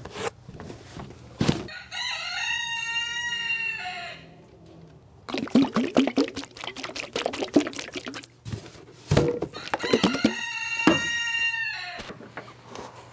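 A rooster crowing twice, each crow about two seconds long and several seconds apart, with a quick run of clicks and rattles in between.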